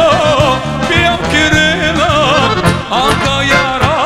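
Live Balkan Roma band music: a heavily ornamented lead melody that wavers up and down in pitch, over a steady beat of drums and bass.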